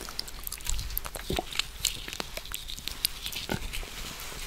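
Close-miked eating of rambutan fruit: wet chewing and mouth sounds, with many short clicks and smacks.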